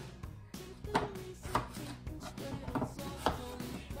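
Knife slicing through a fresh apple, a stroke about every half second.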